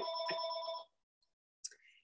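A phone ringing, a steady ring made of a few pure tones held together, which cuts off abruptly just under a second in.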